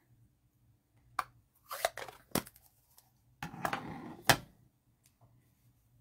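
Craft supplies being handled and put away on a desk: a few light clicks and short rustles, then a sharper click about four seconds in.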